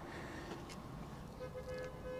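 Faint outdoor background noise, mostly a low rumble. About one and a half seconds in, a faint steady pitched tone with overtones comes in and holds.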